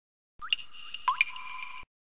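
Logo intro sound effect: two short rising blips, about half a second apart, over a held tone that cuts off suddenly near the end.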